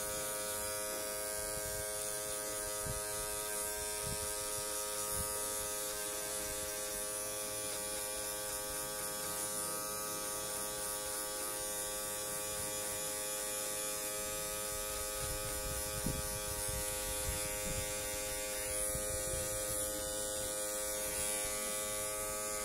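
Electric hair clippers running with a steady buzz as they are worked over the back of a short haircut, blending out the line of a fade.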